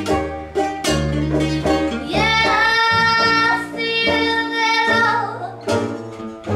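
A small acoustic band plays live: upright bass, banjo and acoustic guitar pluck a rhythmic accompaniment, and from about two seconds in a woman's voice holds one long note for about three seconds.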